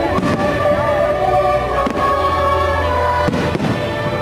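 Fireworks shells bursting in the sky, a few sharp bangs over about four seconds, the first right at the start and two more near the middle and near the end. Show music plays steadily underneath.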